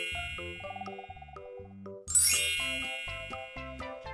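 Chiming sound effects over light background music: a bright ding at the start, then a sparkling shimmer that sweeps upward in pitch about two seconds in, the loudest moment.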